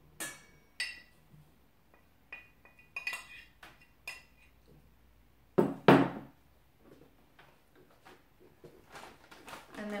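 A metal spoon clinking and scraping in a stainless steel mixing bowl as dry ingredients are tipped in and stirred. There is a run of short clinks with a brief ring, and two louder knocks about six seconds in.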